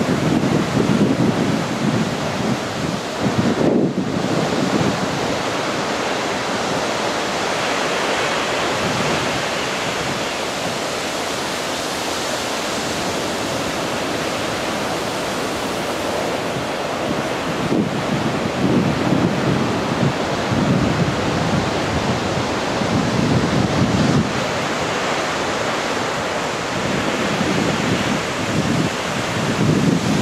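Heavy ocean surf breaking on a rocky coast, a continuous roar of crashing waves and whitewater. Wind rumbles on the microphone in gusts at the start and through the second half.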